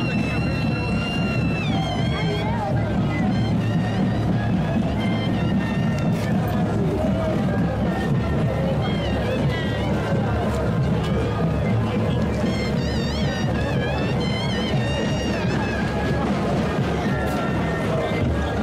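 Live moseñada parade music, played continuously: a dense low drumbeat under wavering melodic lines from wind instruments, with crowd voices mixed in.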